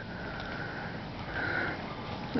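A person sniffing close to the microphone, twice: once at the start and again about a second and a half in.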